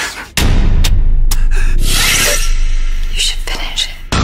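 Horror-trailer sound design: a loud deep rumble cuts in sharply about a third of a second in and holds, struck through with several sharp hits early on, with a person's voice over it.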